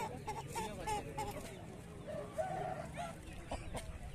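Chickens clucking: a quick run of short calls, then one longer held call a little past halfway, over a steady low background noise.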